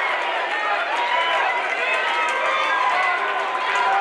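Crowd of spectators around a boxing ring talking and calling out, many voices overlapping in a steady hubbub.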